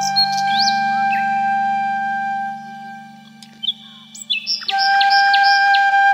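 Background music: long held flute notes over a steady low drone, with bird chirps mixed in. It thins out about halfway through, then swells back in with a run of quick chirps near the end.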